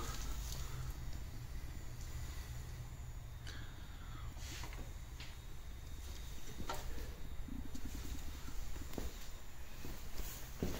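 Quiet room tone with a steady low rumble and a few faint scattered clicks and rustles of a handheld camera being moved.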